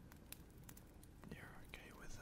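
Near silence: a faint steady rain-and-fireplace ambience with scattered soft crackling clicks. A soft breathy voice sound comes close to the microphone about a second and a half in.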